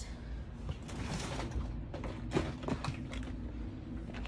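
Light, scattered clicks and knocks of plastic being handled, with a clear plastic compartment box of clay eyes being fetched.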